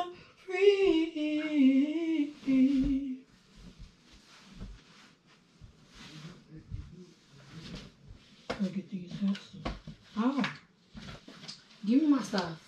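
A person humming a wavering tune for about three seconds, followed by faint rustling of clothes and bedding being handled, and a few short hummed or voiced sounds near the end.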